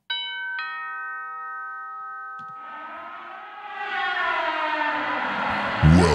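Two-note doorbell chime sound effect, a higher ding then a lower dong half a second later, ringing on for about two seconds. A rushing noise then swells up and grows louder through the rest, as part of a produced intro stinger.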